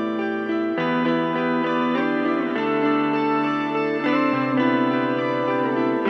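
Guitar music with no voice over it: sustained guitar chords that change about every two seconds.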